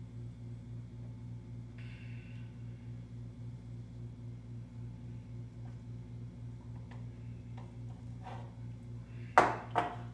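Kitchen counter work over a steady low electrical hum: a brief faint hiss about two seconds in, a few light clicks, then two sharp knocks near the end, like a utensil or container being set down or tapped on the counter.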